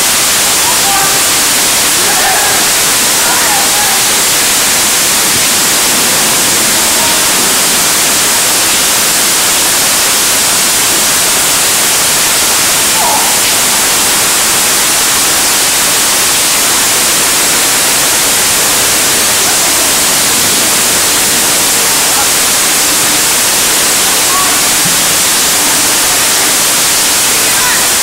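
Heavy rain falling: a loud, steady hiss throughout, with faint voices now and then.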